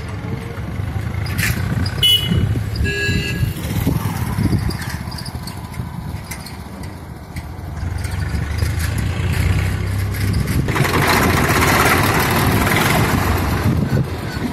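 Motor vehicle engines running in a street, with a low rumble throughout. A vehicle grows louder and passes close in the last three seconds.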